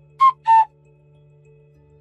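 Two short, bright electronic tones about a third of a second apart, the second a little lower in pitch: a scene-transition sound effect. Faint steady background music follows.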